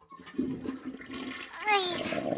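Cartoon toilet-flush sound effect: rushing, swirling water. A cartoon voice starts near the end.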